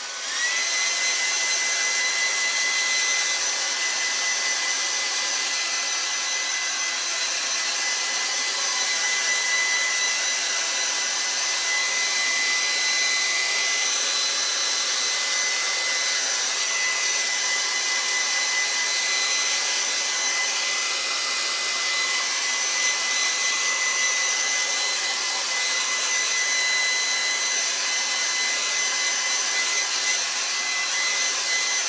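Handheld hair dryer switched on, its motor whine rising in the first half second to a steady high tone, then running steadily with a loud rush of air.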